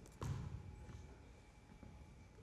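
A basketball bounced once on a wooden gym floor as the free-throw shooter readies his shot: a single dull thud about a quarter second in, ringing briefly in the large hall.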